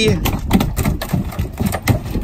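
A run of irregular knocks and clatters on a boat deck, over wind on the microphone and a low steady rumble.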